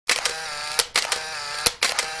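A mechanical click-and-whirr sound effect, camera-like, over the title animation. Each cycle is a click, a steady whirr of under a second and a sharp click. It runs twice, and a third cycle begins near the end.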